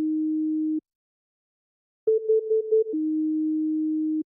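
Clean electronic beep tones in a repeating pattern. A held low tone cuts off about a second in, and after a pause comes a quick run of about seven higher beeps that drops into the held lower tone again.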